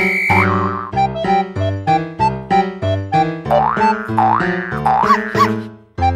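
Bouncy keyboard background music with a steady beat, overlaid with cartoon 'boing' sound effects: several quick rising-and-falling pitch glides in the second half. The music fades out sharply just before the end.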